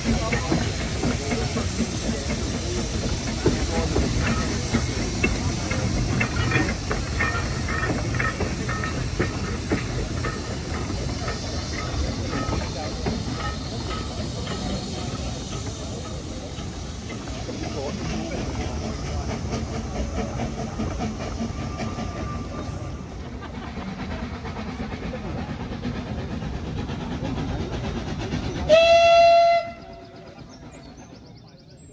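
Narrow-gauge steam train with wooden carriages rolling past, wheels clicking over the rail joints, the sound fading as it draws away. Near the end a steam whistle blows once, short and loud.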